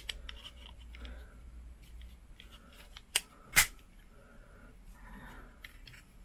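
Plastic lens cover being pressed onto a Ulanzi GoPro Hero 8 vlog case: faint handling rustle, then two sharp plastic clicks about half a second apart midway as the cover snaps into place.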